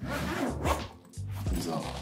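A backpack zipper being pulled, a quick rasping swish, over steady background music.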